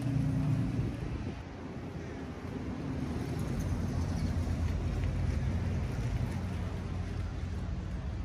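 Engines of passing road vehicles running, a low steady drone that is strong at the start, eases off, then swells again about three seconds in and holds.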